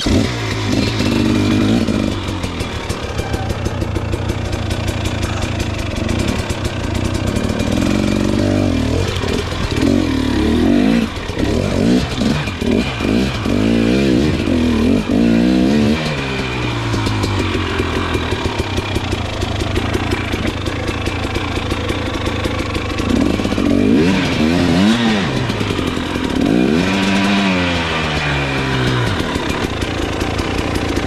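KTM 300 XC's 300 cc two-stroke single-cylinder dirt bike engine running and being revved, its pitch swinging up and down in several bursts in the middle and again near the end.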